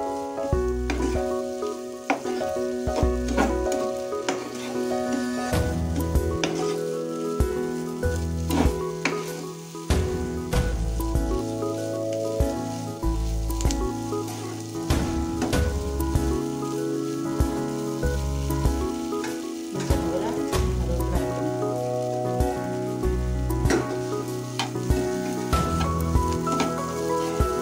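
Diced potatoes sizzling in oil in a nonstick pan, stirred with a flat spatula that scrapes and knocks against the pan in frequent short clicks. Background music with a bass line that changes note about once a second plays throughout.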